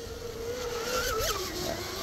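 Rocket 2948 3450kv brushless motor of a 21-inch RC twin-hull catamaran whining at about half throttle. The whine holds steady, blips up just past a second in, then settles to a lower pitch.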